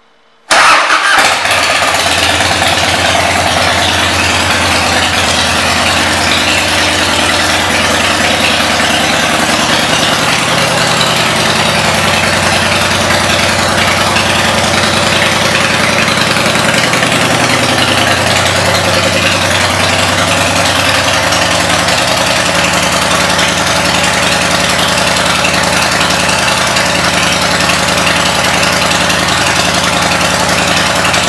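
A 1998 Harley-Davidson Heritage Softail's Evolution V-twin with Rinehart pipes comes in suddenly about half a second in and idles steadily, loud and even.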